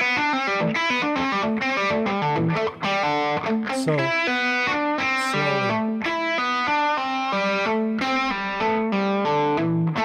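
Distorted electric guitar (a Stratocaster) playing a rapid, repeating open-string lick: fretted notes pulled off to open strings and hammered back on, in an even stream of quick notes.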